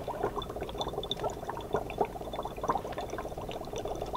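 Dry ice bubbling in a jar of warm water: a rapid, irregular gurgling as the carbon dioxide gas escapes through the water.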